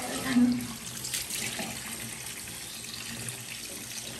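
Kitchen tap running steadily into a stainless steel sink, the water splashing through a mesh strainer of shredded vegetables being rinsed.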